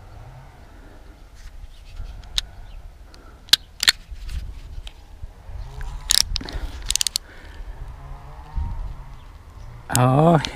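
Utility knife blade scraping and prying under the end of an old metal trim strip on a caravan wall, cutting it free of white adhesive sealant, with several sharp clicks and scrapes.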